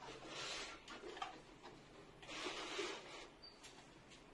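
Faint scratchy rustling and rubbing of craft pieces being handled and fitted together for a homemade shoe rack. It comes in two bursts of about a second each, with a few light clicks.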